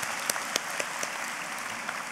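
Large audience applauding in a big hall, with a few sharper single claps in the first second, slowly dying away.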